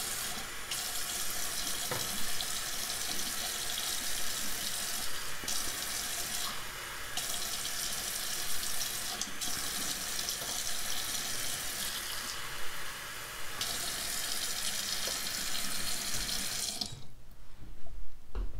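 Bathroom sink faucet running into small plastic cups of paint and dish soap, filling them so the soap foams into bubbles. The sound of the stream shifts a few times as the cups are moved under it, and the tap shuts off about a second before the end.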